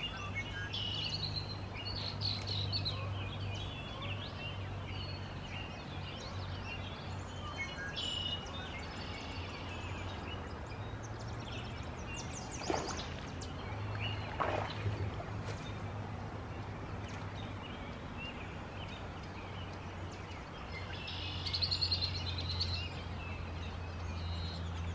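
Songbirds chirping and trilling over a steady low hum, with a louder run of trills near the end; two short, sharp sounds come about halfway through.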